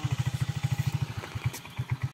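Motorcycle engine idling with a steady, rapid low pulse.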